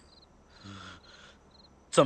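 Faint night ambience of crickets chirping in short high pulsed trills, three times, with a faint short low sound about half a second in.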